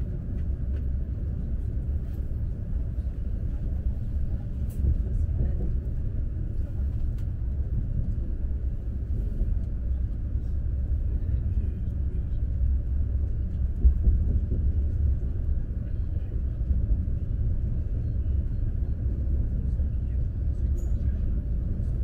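Steady low rumble of an Alfa Pendular electric tilting train running at speed, heard from inside the passenger cabin, with faint clicks and one brief louder knock about two-thirds of the way through.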